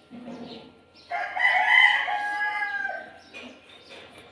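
A rooster crowing once: one long call that starts about a second in and lasts about two seconds.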